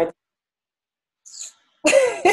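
The end of a spoken word, then over a second of dead silence from the gated call audio, a short breathy hiss, and a sudden burst of laughter near the end.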